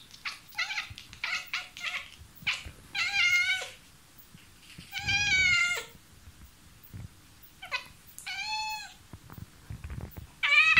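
A tabby cat vocalising up at a mosquito overhead: first a quick run of short chirps, then three drawn-out meows about two to three seconds apart, each dropping in pitch at its end.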